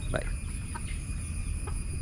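Egyptian Fayoumi chickens clucking: a few short, separate clucks.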